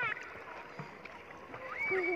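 Sea water lapping and sloshing quietly around a floating swim ring, with a short rising voice sound at the very start and another voice rising in pitch near the end.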